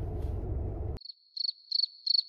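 Low car-cabin rumble that cuts out abruptly about a second in, replaced by a cricket-chirping sound effect, the comic cue for an awkward silence: a high, thin chirp repeated about three times a second over dead silence.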